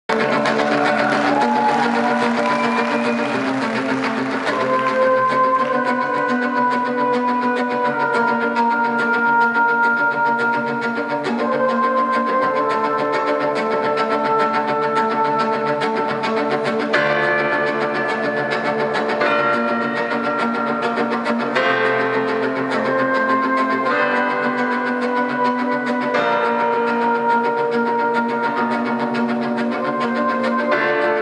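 Live acoustic band playing an instrumental passage, with sustained melodic notes from a brass horn over grand piano and cello.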